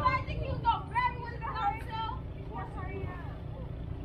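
Indistinct voices talking, over a steady low rumble.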